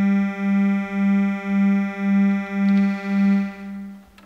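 Nord Lead synthesizer holding a single bright, buzzy note that pulses in volume about twice a second. Its upper tones grow brighter about three seconds in, and the note stops at the end.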